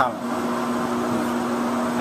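Steady whirring air noise of data-center server fans and cooling airflow, with a constant low hum under it.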